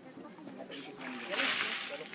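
A bucketful of water poured over a person, splashing down onto the body and the ground. The splash starts a little over a second in and is the loudest sound.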